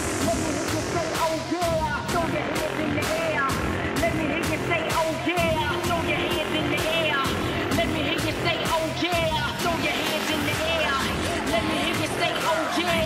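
House-music DJ mix playing from DJ software at about 128 beats per minute, with a steady beat of roughly two hits a second.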